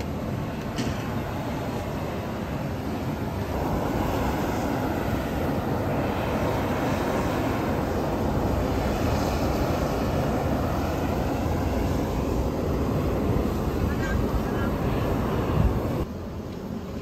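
Steady rushing noise of steam pouring off a boiling hot-spring pool, growing louder about four seconds in.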